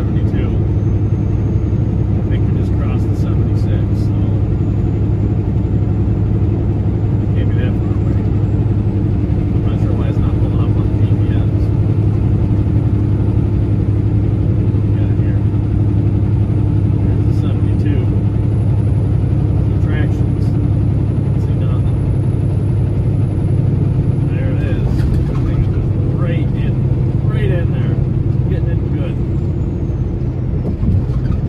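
Steady drone of a pickup truck cruising at highway speed, heard from inside the cab: engine and road noise with a constant low hum.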